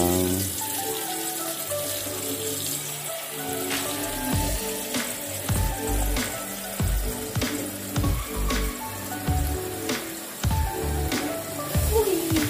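Tap water pouring in a steady stream into a metal cooking pot partly filled with water, giving a continuous splashing hiss. Background music plays over it, its low beat coming in about four seconds in.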